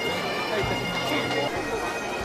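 Bagpipes playing under the chatter of a crowd.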